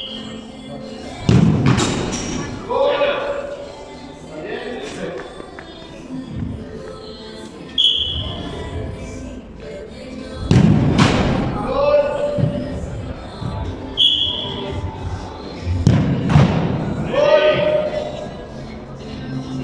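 Soccer balls kicked hard at the goal: three loud thuds about six seconds apart. Each thud comes a second or two after a short high beep.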